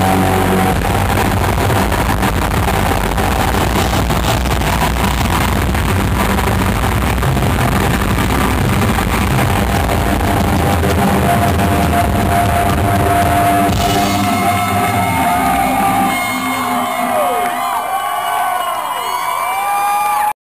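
Live rock band with drums, cymbals and electric guitar playing loud, the dense sound thinning out about fourteen seconds in as the song ends. The crowd then cheers with whoops and whistles.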